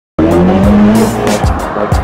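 A sports car's engine revving and tyres squealing over hip hop music with a heavy beat, starting suddenly a moment in.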